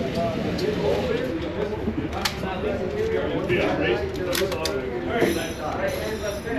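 Indistinct talking, with a few sharp clicks about two seconds in and again twice in quick succession a little past the middle.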